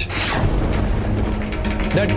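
A dramatic TV-serial sound effect over the background score: a short whoosh at the start, then a low rumble with fast mechanical ticking.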